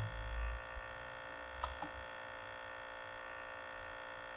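Faint steady electrical mains hum made of many even tones, with two faint clicks close together about a second and a half in.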